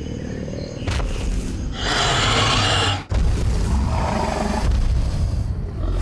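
Movie-style creature roars for a Spinosaurus: a long, rough roar about two seconds in, followed straight away by a second one, over a low rumble.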